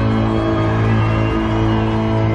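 Live band with guitar, bass and keyboards holding one long sustained chord, steady and unchanging.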